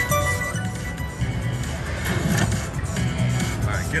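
Casino Royale themed video slot machine playing its game music and electronic sound effects as a bonus feature comes up, over casino background noise.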